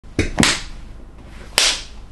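Hands clapped together three times with sharp slaps, two in quick succession and one more about a second later.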